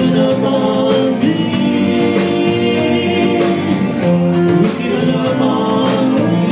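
Live band playing: guitars, bass guitar and drum kit with a male lead vocal holding long sung notes over a steady drum beat.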